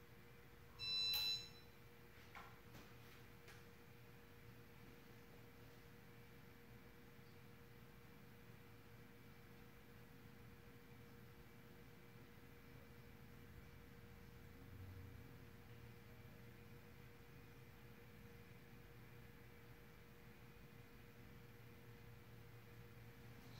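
A short electronic beep about a second in, then a 1988 Casablanca Zephyr ceiling fan running on a low speed with a faint, steady motor hum.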